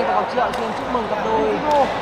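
Badminton doubles rally on an indoor court: short sharp squeaks of court shoes as the players lunge and turn, with a few crisp racket strikes on the shuttlecock.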